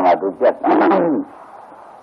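A man's voice preaching in Burmese on an old hissy recording. It stops a little over a second in, leaving only the recording's hiss.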